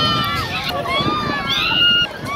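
Riders on a fairground ride screaming and shouting, several high voices overlapping in long, wavering shrieks over a steady crowd din.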